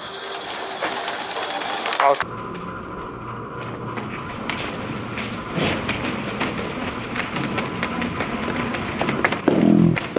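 Domestic pigeons fluttering and flapping their wings at close range, a dense run of quick wing claps and rustles, with some pigeon cooing.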